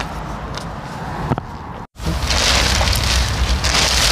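Clear plastic tunnel cover sheet rustling and crackling as it is pulled back by hand. The sound is fairly soft at first, breaks off for an instant, then is loud and dense from about two seconds in.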